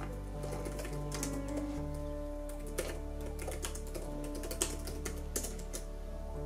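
Typing on an HP laptop keyboard: irregular runs of quick key clicks, over soft piano background music with held chords.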